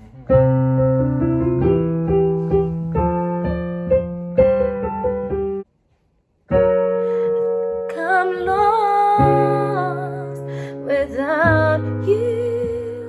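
Piano music: sustained chords under a slow melody. The music cuts out completely for about a second just before the middle, then resumes, with a wavering singing voice above it in the second half.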